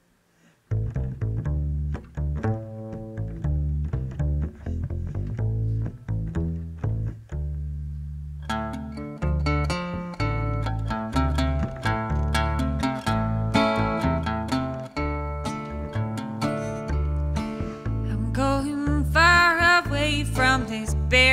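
Upright double bass plucked in a steady country rhythm, playing alone for the first several seconds of a song's intro; an acoustic guitar joins in about eight seconds in.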